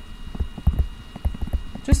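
Stylus tapping and knocking against a tablet screen while handwriting, a quick irregular series of short knocks.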